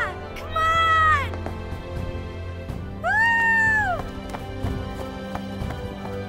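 A baby dragon's high cries, created for the film, twice: once about half a second in and again about three seconds in, each call rising and then falling in pitch. Sustained orchestral music plays underneath.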